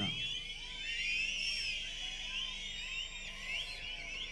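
An audience whistling together: many overlapping high whistles sliding up and down in pitch at once.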